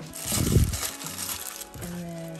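Tissue paper crinkling as gloved hands pull it off a small red plastic box, with a low dull bump about half a second in, over background music with held notes.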